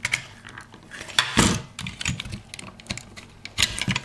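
Plastic clicks and scrapes of a pull-out fuse carrier being worked out of a mains terminal block with fingers and a small screwdriver. The clicks come irregularly, the loudest about a second and a half in and a quick pair near the end.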